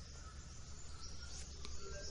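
Faint background with a low steady hum and a few distant bird chirps.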